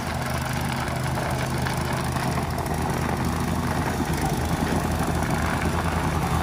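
Gas-powered plate compactor, its plate fitted with a rubber pad, running steadily as it is worked over concrete pavers to vibrate the joint sand down into the joints.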